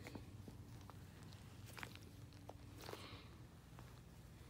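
Near silence, with faint rubbing and a few soft clicks from a hand squeezing a large rubber squishy ball.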